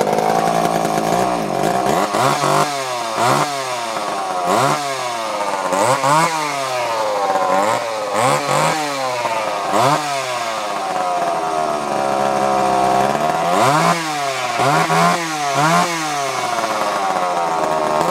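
Vintage Montgomery Ward 2.1 cubic inch two-stroke chainsaw, just pull-started and running free with no bar or chain fitted. It idles between repeated throttle blips that send the engine pitch up and back down, about a dozen times, several in quick succession near the end.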